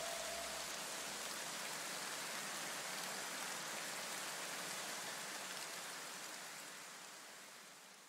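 A soft, even hiss that slowly fades away to near silence: the noisy tail of an electronic background track dying out.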